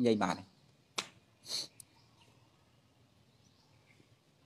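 A man's speech ends in the first half second, followed by a pause holding one sharp click about a second in and a short hiss half a second later, then near silence.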